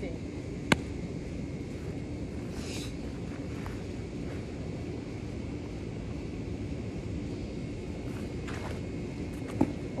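Steady outdoor background noise with a faint low hum, broken by one sharp, loud knock about a second in and a smaller knock shortly before the end.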